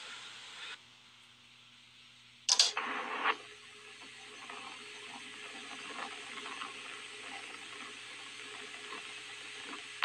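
A sudden loud burst of noise about two and a half seconds in, then a steady hiss with faint crackles: static from an old tabletop radio.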